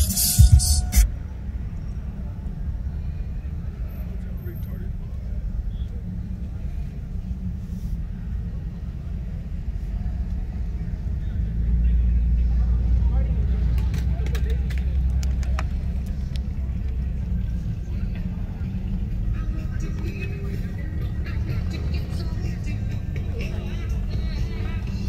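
Low, steady rumble of vehicles running, mixed with music and people's voices; the rumble grows louder about halfway through.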